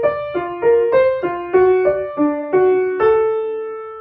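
Piano played with the right hand alone: a single-line melody of short notes, about three a second, alternating up and down. About three seconds in it settles on a long held note that fades slowly.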